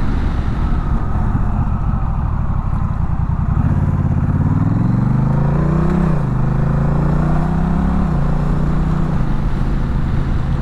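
Honda Rebel 1100's parallel-twin engine pulling with rising pitch under wind rumble. About six seconds in the pitch drops suddenly as the dual-clutch transmission changes gear, then it runs steadily on.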